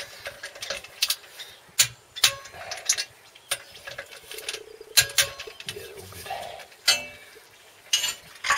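Socket wrench and metal tools clicking and clinking on the clutch cover bolts as they are tightened: a string of separate sharp clicks at uneven intervals, some ringing briefly like metal on metal.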